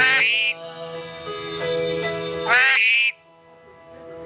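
Rainbow lorikeet giving two loud calls, each about half a second long with a pitch that arches up and down, one at the start and one about two and a half seconds in. Background music with held notes runs under them and drops away near the end.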